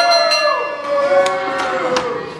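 Wrestling ring bell struck several times, the first strike the loudest and each one ringing on, signalling the end of the match after the pinfall. A drawn-out voice calls out underneath.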